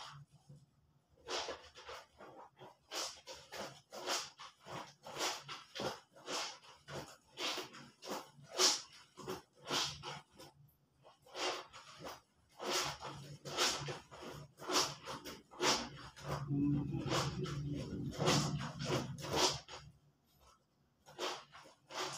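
Clothes being scrubbed by hand in a plastic basin of soapy water: wet swishes and squelches as the fabric is rubbed and squeezed, coming irregularly about one or two a second.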